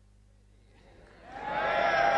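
Low mains hum and tape hiss, then a man's voice begins about a second and a half in, holding a drawn-out word into a microphone.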